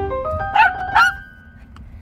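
A small dog barks twice in quick succession, about half a second apart, over the last rising notes of background piano music.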